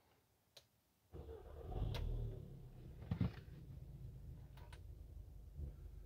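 2016 Audi S3's 2.0-litre turbocharged four-cylinder starting about a second in, swelling briefly and then settling into a faint, steady idle, heard from inside the cabin. A short knock about three seconds in.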